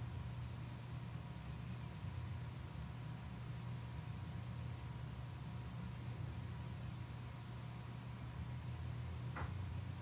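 Quiet room tone: a steady low hum under a faint even hiss.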